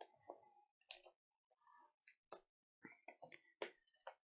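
Fingers picking and pulling at the top of a cardboard trading-card box to open it: a scattering of faint clicks and scratches, about a dozen in all, with a small cluster towards the end.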